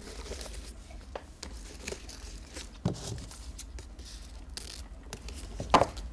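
Faint rustling of satin ribbon and wrapping paper as a gift box with a bow is handled, with a few short soft clicks scattered through.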